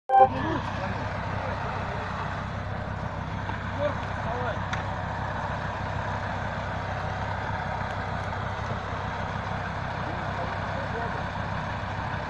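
An off-road SUV's engine running steadily while the vehicle sits stuck in mud on a winch cable, with a brief handling bump on the microphone at the very start and a few faint voices.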